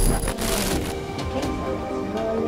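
A short burst of digital glitch-static sound effect, lasting just under a second, then background music with steady held notes.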